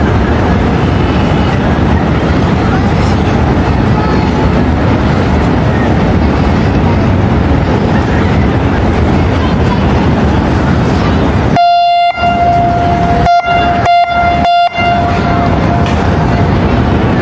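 A steady rushing noise, then near the end a horn sounds a run of toots, one long and several short, over about three seconds.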